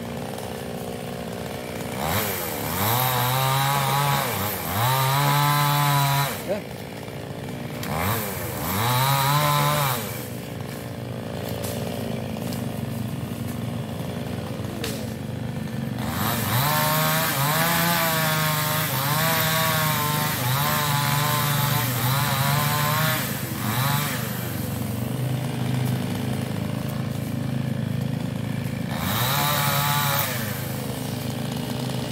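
A small two-stroke New West chainsaw cutting sengon logs. It idles between cuts and revs up several times as it goes through the wood: two short cuts early, a long cut in the middle, and another rev near the end, its pitch wavering under load.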